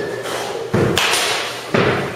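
Sharp thuds and knocks from baseball batting practice in an indoor cage, where bats strike balls and balls hit the netting. There are three hits, about a second apart.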